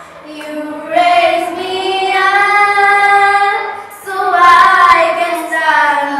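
A small group of children singing together, holding long steady notes; the singing swells about a second in.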